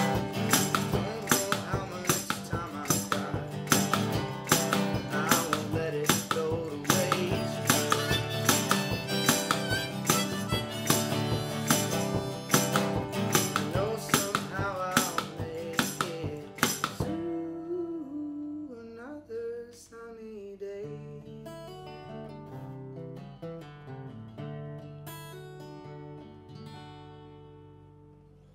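Acoustic guitar strummed in a steady, driving rhythm with harmonica played over it. About 17 seconds in the strumming stops and the song winds down on bending harmonica notes and a few picked guitar notes that fade away.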